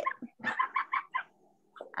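An animal calling: a rapid run of about eight short, pitched calls in under a second, heard over a video-call connection.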